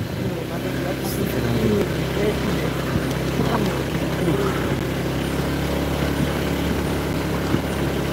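Motorcycle engine running steadily while riding along a rough dirt road.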